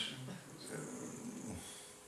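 A man's quiet, breathy chuckle with a few low, broken voice sounds, faint against the room.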